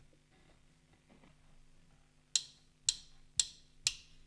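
Drummer's count-in before the song: four sharp clicks of drumsticks, evenly spaced about half a second apart, starting a little past halfway. It is preceded by near-silent room tone.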